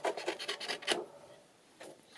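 Small scissors snipping through a printed paper sheet, several quick cuts in the first second, then quiet.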